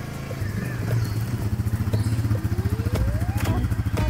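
Quad bike (ATV) engine running with a steady, throbbing note as the ATV drives slowly over grass and pulls up, a thin rising whine coming in over it in the second half.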